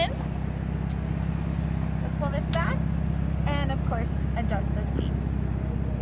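A car engine idling steadily, a low even hum, with faint voices over it.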